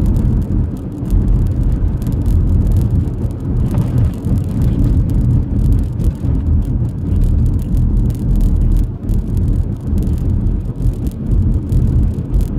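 Car being driven, heard from inside the cabin: a loud, continuous low rumble of engine and road noise that rises and falls slightly.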